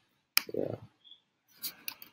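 Computer mouse clicks: a sharp click about a third of a second in, followed by a short low sound, then a few quick clicks near the end.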